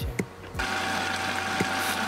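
Food processor motor running steadily as its blade churns a thick, sticky paste. It starts about half a second in after a couple of clicks, and runs at an even pitch with a low hum.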